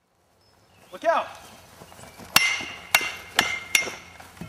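Four sharp metallic clangs, each with a brief ringing tone, about half a second apart: hand-held weapons striking each other in a staged fight. A short shout falls in pitch about a second in.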